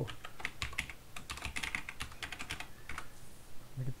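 Typing on a computer keyboard: a fast run of key clicks that stops about three seconds in.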